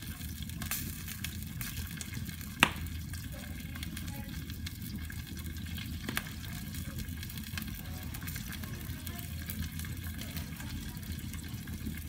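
Wood fire crackling in a fireplace, with scattered small crackles and a sharp pop about two and a half seconds in, and a smaller pop about six seconds in.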